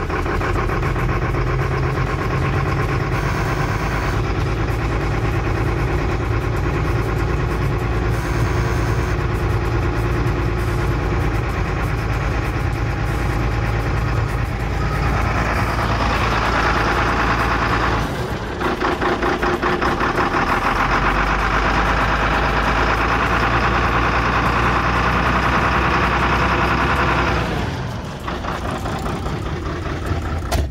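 Mercedes-Benz Atego truck's diesel engine idling steadily at about 500 rpm. About halfway through it grows louder and brighter as it is heard from outside the cab, then falls back near the end.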